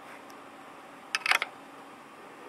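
Handling noise from a Gamma-Scout Geiger counter being picked up: a quick cluster of plastic clicks and knocks a little over a second in, over faint room tone.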